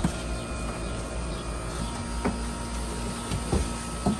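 Hands rubbing and lathering a wet, soapy dog's coat in a utility sink, with a few light knocks, over a steady mechanical hum.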